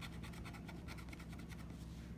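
Edge of a dollar casino chip scratching the latex coating off a scratch-off lottery ticket in quick, repeated strokes.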